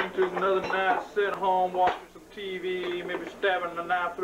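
Men's voices making drawn-out, pitched vocal sounds without clear words, with a brief pause about two seconds in.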